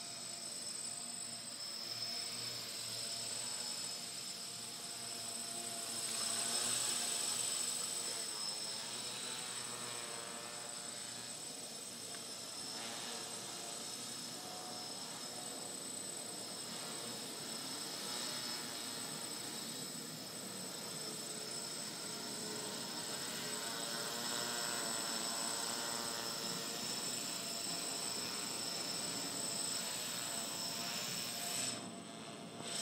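GAUI 500X quadcopter's electric motors and propellers buzzing in flight, the pitch wavering up and down as the motor speeds change while it manoeuvres. It is loudest about six to eight seconds in.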